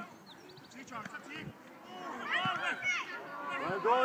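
Several voices shouting at once on a football pitch, getting louder and more crowded from about two seconds in.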